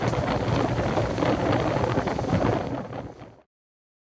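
Helmet-mounted camera's sound of a mountain bike riding down a rough dirt trail: wind buffeting the microphone over the rattle and crunch of tyres and bike over the ground. It cuts off suddenly to silence about three and a half seconds in.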